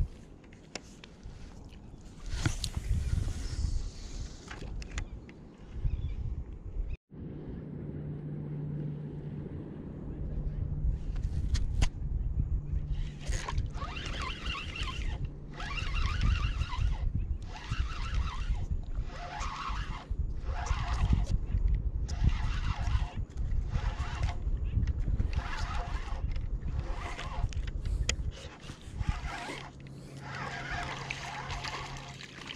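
Spinning fishing reel being cranked in a steady retrieve, a short whirr with each turn of the handle about once a second in the second half, over low rumbling water and wind noise.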